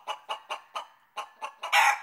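A chicken clucking: a steady run of short clucks, about four a second, ending in a louder, longer cluck near the end.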